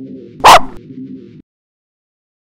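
A single loud, short dog bark about half a second in, over quiet guitar music that stops abruptly soon after.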